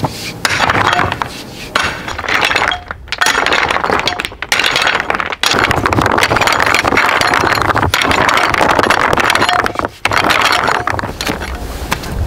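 Loose rock rubble clattering, clinking and scraping as stones are shifted and pried with a hand tool and stepped on, with a few brief pauses.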